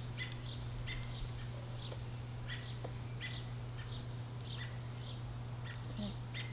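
A bird chirping repeatedly, a short high chirp about every three-quarters of a second, over a steady low hum.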